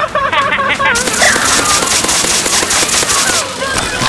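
Water spraying and splashing: a burst of harsh, crackling hiss that starts about a second in and stops shortly before the end, after a second of wavering, pitched voices.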